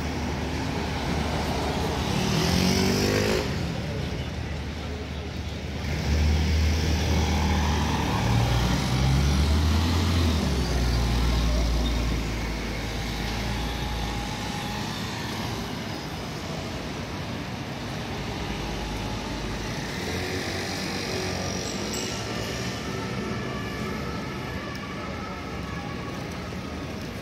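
City street traffic: cars and motor scooters passing. A vehicle accelerates with a rising engine note about two seconds in, and a louder low rumble runs from about six to twelve seconds in.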